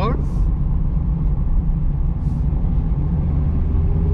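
Mazda MX-5 Roadster driving with the roof open, its 1.5-litre four-cylinder engine running under a steady low rumble of wind and road noise. A faint tone rises slowly near the end.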